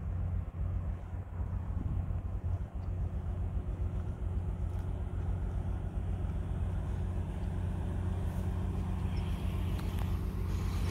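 Steady low hum of a parked SUV's engine idling, under a light outdoor background noise.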